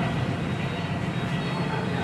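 Steady low machine-like hum with a faint high whine above it, running evenly without breaks.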